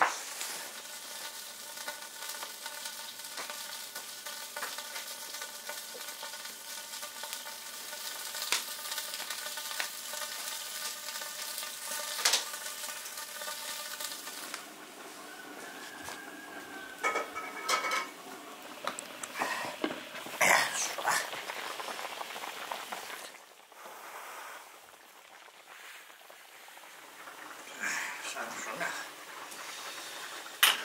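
A big iron wok of stew cooking on a wood-fired stove: a steady bubbling hiss with scattered crackles and knocks, and a steady hum of several tones through the first half. Near the end comes clatter as the stew is stirred in the wok.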